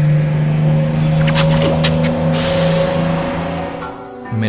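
A vehicle engine running with a steady hum, with a brief hiss about two and a half seconds in.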